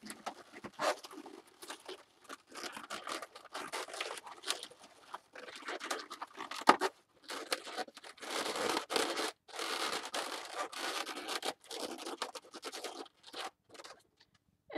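Latex twisting balloons rubbing and squeaking against each other in irregular bursts as a small eye balloon is pushed and twisted into the body of a balloon fish, with one sharp snap about halfway through.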